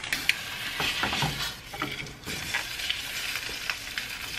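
An egg frying in a non-stick pan, sizzling steadily, with scattered clicks and scrapes of a spatula against the pan.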